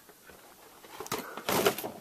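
Quiet room tone, then from about a second in a short stretch of rustling and light knocks from things being handled close to the microphone.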